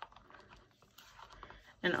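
Faint, scattered light clicks and scraping of a spatula stirring coloured soap batter in a small cup.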